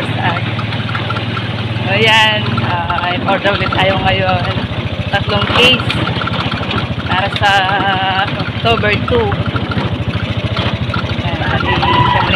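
A small motorcycle engine running as the riders move along, its low drone turning into a quick, even pulsing about three seconds in, with people's voices over it.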